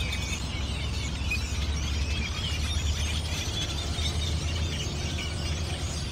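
A large flock of birds calling together at a roost, a dense continuous chatter of many overlapping chirps and squeaks over a steady low rumble.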